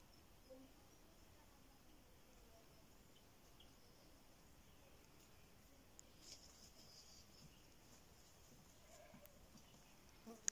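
Near silence: faint outdoor background with a few soft, brief high-pitched sounds, the clearest about six seconds in.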